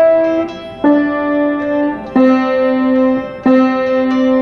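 Piano playing slow single held notes stepping down through the three white keys under the middle pair of black keys, E, D, then C, with the last note, C, struck twice.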